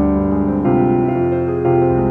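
Slow piano music: sustained chords, with a new chord struck about once a second.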